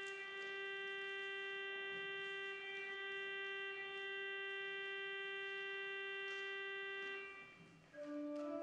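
Church organ sustaining one long, steady held note. It is released and dies away about seven seconds in, and the next chord enters right at the end.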